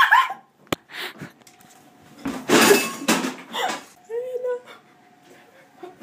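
Commotion: a sharp knock just under a second in, then a loud breathy cry and short voice sounds amid handling noise, with a faint steady hum coming in about four seconds in.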